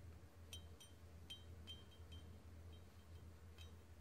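A small stemmed drinking glass tapped with a finger about eight times: faint short clinks whose ping dies almost at once instead of ringing on. The glass is not ringing at all, which marks it as ordinary glass rather than lead crystal.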